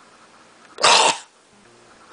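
A man makes one short, harsh, cough-like noise from his throat about a second in.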